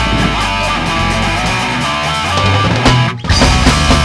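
Punk rock band music led by electric guitars over a heavy bass line; it breaks off for a moment about three seconds in, then comes back in slightly louder.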